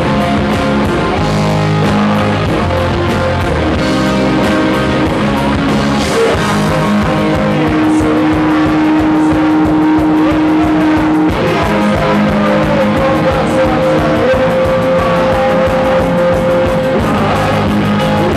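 Live punk rock band playing an instrumental stretch: electric guitars over bass and a steady drum beat, with long held guitar notes through the middle.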